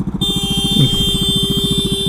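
Royal Enfield Meteor 350's single-cylinder engine running as the bike rolls at low speed, its exhaust beat an even, rapid thumping. A steady high-pitched whine runs alongside it.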